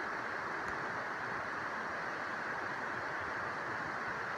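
Steady rushing background noise with an even level and no distinct events.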